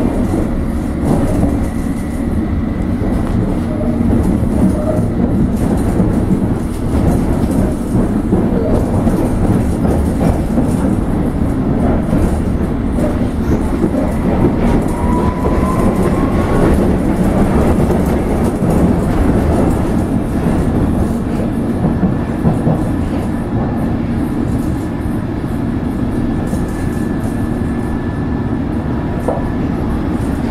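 London Underground S Stock train heard from inside the carriage while running: a steady, loud rumble of wheels on rail. A faint high whine joins in the second half.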